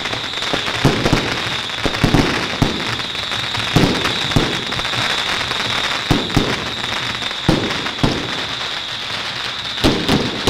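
Strings of firecrackers going off: a steady crackle with louder bangs every half second to a second.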